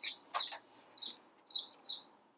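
A small bird chirping: short high chirps repeated about every half second.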